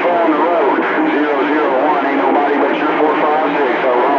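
Voice transmissions received on a CB radio tuned to channel 28 (27.285 MHz), heard through the set's speaker. The talk runs continuously, with no pauses.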